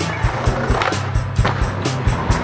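Music with a steady drum beat and bass, laid over skateboard wheels rolling on street pavement.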